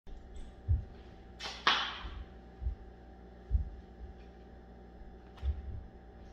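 Two quick swishes about a second and a half in, with a few dull low thumps scattered through, over a faint steady hum: handling noise as the sock form is moved about.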